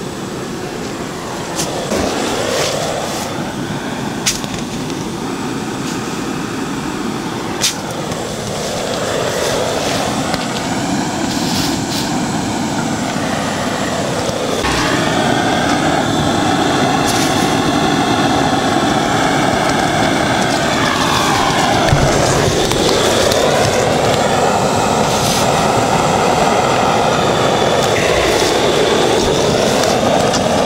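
Gas-canister smoke cannon (thermal fogger) running with a steady jet hiss as it blows a strong stream of vaporised kerosene-and-bipin fog into beehive entrances against varroa mites. It grows louder about halfway through, with a few sharp clicks in the first seconds.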